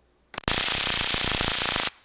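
High-voltage generator module arcing across the gap between its two output wires: a short snap, then about a second and a half of loud, steady electric crackling that cuts off suddenly when the button is released.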